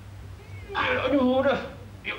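A man's voice letting out one drawn-out, wavering groan of about a second, near the middle, as he strains in a splits stretch.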